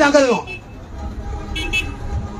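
A man's voice into a microphone trails off half a second in, leaving a low traffic rumble; about a second and a half in comes a brief high-pitched toot, like a vehicle horn.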